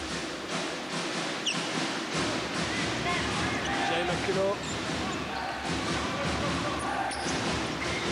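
Steady arena crowd din with voices, and a basketball being dribbled on the hardwood court during live play.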